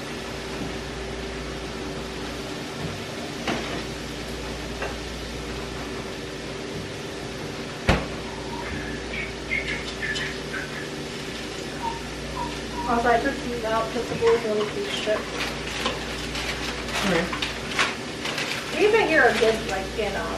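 Kitchen cooking sounds: utensils and a pan clinking at a gas stove over a steady low hum, with one sharp knock about eight seconds in. Soft voices come in during the second half.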